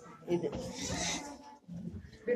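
A person's voice: a short spoken or called-out phrase lasting about a second, then quieter.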